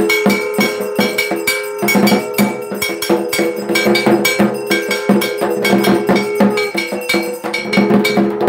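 Puja percussion: struck metal, a ritual bell or gong, beaten fast and steadily, about five strikes a second, together with drums and a held tone. It is loud and ringing.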